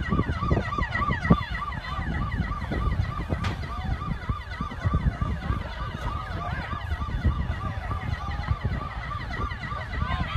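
An emergency siren in a rapid yelp, rising and falling about three times a second, with wind buffeting the microphone.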